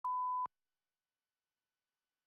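A single short, steady pure-tone beep, the countdown tone of a broadcast countdown leader sounding at the '3' mark.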